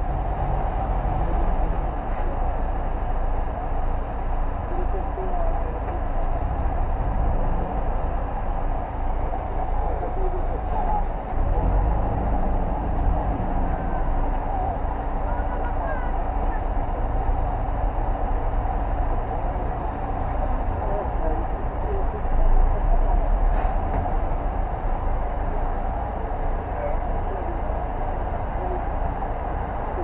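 Steady running noise of vehicles at idle, with indistinct voices in the background.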